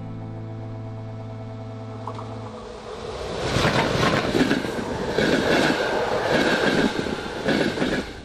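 Held music chord that stops about two and a half seconds in, then a loud, rough, rattling noise of a passing vehicle that runs on to the end.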